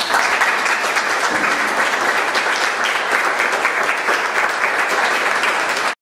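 Audience applauding, breaking out as the music ends and going on steadily until it cuts off suddenly at the end.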